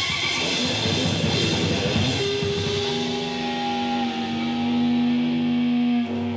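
An electric guitar and a drum kit playing rock together. After about two seconds the drum hits thin out and the guitar holds a long, sustained note.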